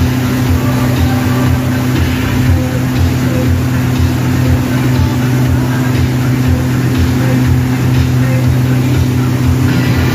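Outboard motor running steadily at speed, its drone mixed with the rush of water from the wake.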